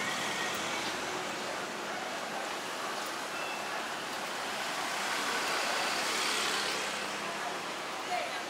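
City street traffic: a steady wash of noise from cars and other vehicles on the road, swelling a little as a vehicle drives past about five to seven seconds in.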